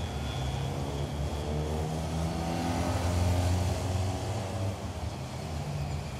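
City street traffic with a car engine running. It grows louder to a peak a little past the middle, then eases off.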